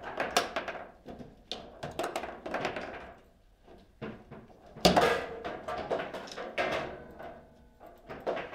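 Table football (foosball) play: the ball cracking off hard plastic figures and rods slamming and rattling in their bearings, a rapid, irregular series of sharp knocks and clacks. The loudest bang comes about five seconds in, with a short ring after it.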